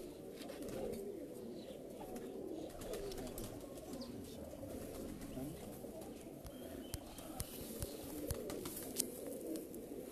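Domestic pigeons cooing, many overlapping coos forming a continuous low murmur, with a few faint clicks in the second half.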